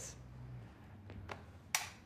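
Quiet room tone with a low hum, a couple of faint clicks around the middle and one sharp click near the end.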